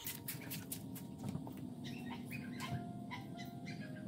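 Faint outdoor background of short, scattered bird chirps, with a few soft held tones underneath.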